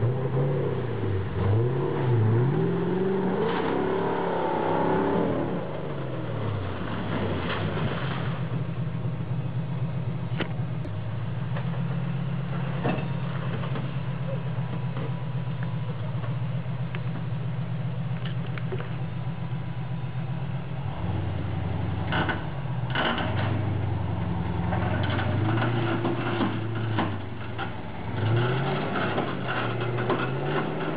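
Land Rover four-wheel drive's engine working over a steep, rutted off-road track: revving up and down for the first few seconds, holding a steady note for a long stretch, then revving up and down again with a few knocks about two-thirds through.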